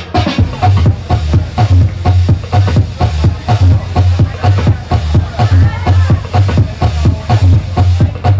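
Live DJ mix of electronic dance music played over a PA from Pioneer CDJ-400 decks and an Allen & Heath Xone:22 mixer: a loud, steady kick-drum beat about two beats a second under synth layers.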